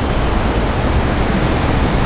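A steady, loud hiss of even noise with no breaks or strikes, the noise floor of the sermon's amplified microphone recording.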